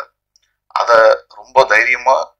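Only speech: a man talking into a microphone, starting again after a pause of well under a second.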